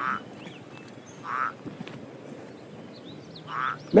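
A frog croaking at a pond: three short calls, one at the start, one about a second and a half in, and one near the end.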